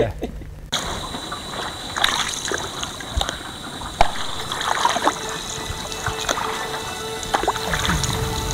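Canoe paddle strokes through calm water, with water trickling and dripping off the blade, over background music.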